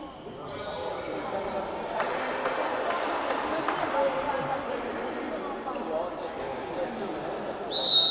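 Background voices and a few ball bounces on the wooden floor of a sports hall, then near the end a loud, steady referee's whistle blast signalling the kick-off of the second half of a futsal match.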